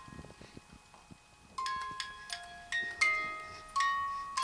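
Crib mobile's music box playing a lullaby in bell-like chime notes. The tune pauses for about a second and a half, with only faint clicks, then starts up again.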